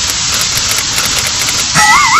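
Loud, steady television-static hiss sound effect. Near the end a short wobbling cartoon 'toink' spring sound starts over it.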